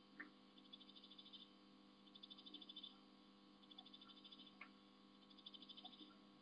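Faint trilling animal calls: short bursts of rapid high pulses, each under a second long, repeating about every one and a half seconds over a steady low hum. Twice a single sharp crack breaks in, at the start and a little over four seconds in, from bamboo being chewed.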